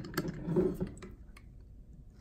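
A few light metallic clicks in the first second or so as a lever handle is fitted onto the shaft of a butterfly valve and turned, to bring the roll pin upright.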